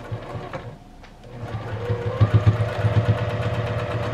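Juki TL-2010 straight-stitch sewing machine starting up about a second and a half in, then running steadily with a fast, even stitching rhythm as it sews through folded cotton fabric.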